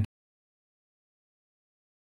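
Dead silence: the sound track is empty, with only the clipped tail of a spoken word at the very start.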